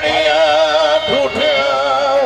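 Male Punjabi folk singer holding a long, wavering sung note without words, over sustained harmonium accompaniment.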